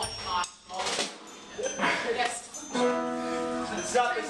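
About three seconds in, an instrument holds a steady chord of several notes for about a second, amid on-stage chatter and laughter.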